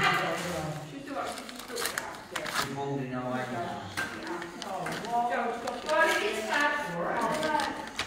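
A paper envelope being torn open and handled, with sharp crackles and rips, under indistinct low speech.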